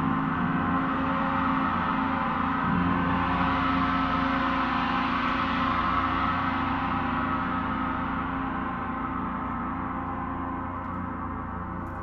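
Large flat gong played with a soft felt mallet in repeated soft strokes, building a dense sustained wash of many tones. The strokes stop a few seconds in and the gong rings on, slowly fading toward the end.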